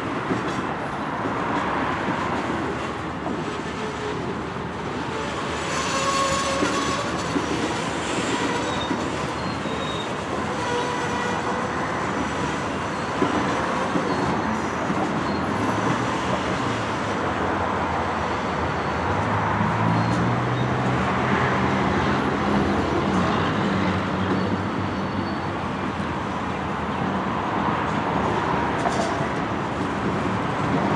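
Freight cars of a passing train rolling by with a steady rumble and wheel clatter. High wheel squeal rings out about six to nine seconds in.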